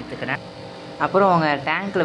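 Speech: a voice talking, briefly at the start and again from about a second in, with nothing else standing out.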